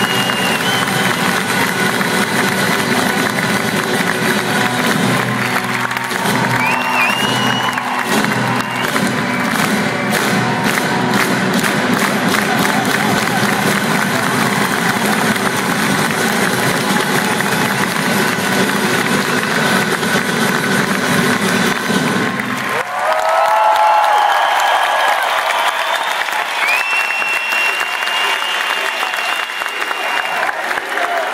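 A live acoustic folk band plays with a reedy shawm lead over drums and plucked strings, and the audience claps along. About three-quarters of the way through the music stops, and a loud burst of cheering and applause follows.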